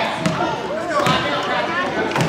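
A basketball being dribbled on a hardwood gym floor: a few evenly spaced bounces, under spectators' voices.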